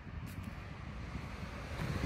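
Wind buffeting a handheld phone's microphone outdoors: a low, uneven rumble over a faint steady hiss.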